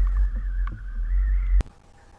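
Low, steady wind rumble on the microphone of a camera mounted on a kayak out on open water. It cuts off abruptly with a click about one and a half seconds in, and a quiet stretch follows.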